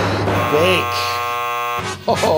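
A buzzer sound effect of the game-show 'wrong answer' kind, marking the verdict as fake: a steady, harsh buzz lasting just over a second that cuts off sharply near the end.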